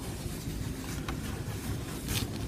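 Low, steady rumble of handling noise with faint rustling as gloved hands turn a corded rotary tool over close to the microphone; a faint tick about a second in.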